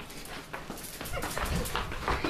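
A dog whining, with a pitched call that rises and falls in the second half, over scattered short clicks and bumps.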